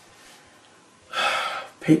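A man's loud, noisy breath lasting about half a second, a second into quiet room tone, with his speech starting right at the end.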